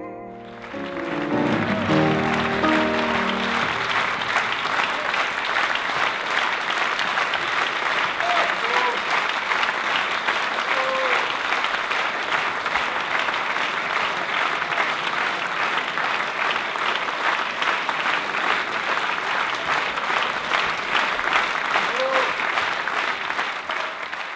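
Concert audience applauding steadily in a theatre hall, the last ringing notes of the music dying away in the first few seconds. A few short calls from the audience rise above the clapping.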